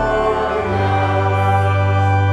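A hymn sung by the congregation with organ accompaniment, held chords over a steady bass note that changes about half a second in.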